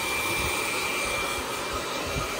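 Chaoba handheld hair dryer running steadily: an even rush of blown air with a thin, steady high whine from its fan.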